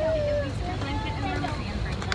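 Steady low rumble of an airliner cabin on the ground just before takeoff, with voices over it.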